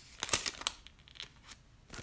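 Thin paper rustling and crinkling in a quick flurry, then a few light ticks: Bible pages being turned to the passage.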